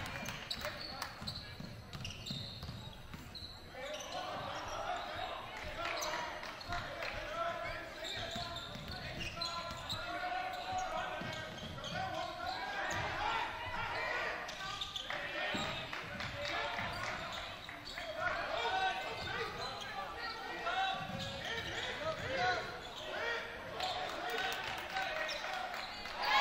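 Basketball dribbling and bouncing on a hardwood gym floor, among players' and spectators' voices and shouts that carry through the reverberant gymnasium.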